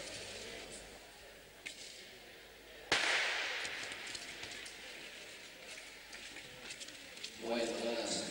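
Starter's pistol fired once to start a short-track speed skating race, a sharp crack that echoes around the ice rink, followed by crowd noise.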